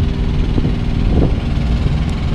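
Semi truck's diesel engine idling: a steady low rumble.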